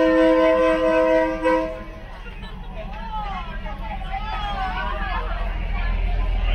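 A train horn sounds a steady chord for about the first two seconds, then cuts off. After that, crowd voices are heard over the low rumble of the train rolling past, which grows louder toward the end.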